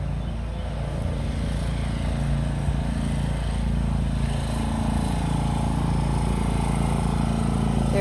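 An engine running steadily in the background, a low drone whose pitch shifts a little a few seconds in.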